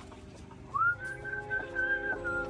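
A man whistling over background music with steady chords; the whistle comes in about three quarters of a second in, sliding quickly up to a held high note.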